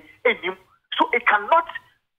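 Speech only: a voice over a telephone line, thin and narrow-sounding, in two short phrases with a brief pause between them.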